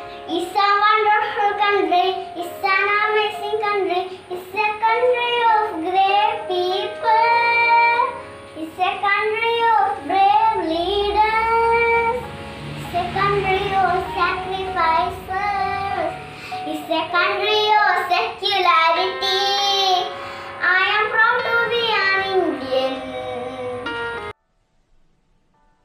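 A young girl singing a song solo in a high child's voice.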